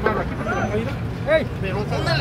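Several people's voices calling out in short, overlapping bursts, over the steady low rumble of a vehicle engine running.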